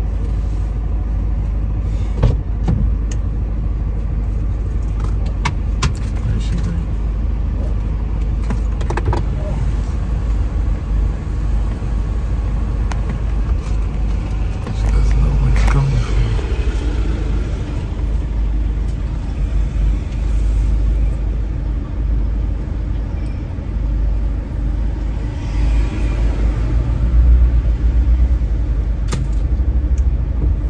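Steady low rumble in a car's cabin, with scattered clicks and knocks.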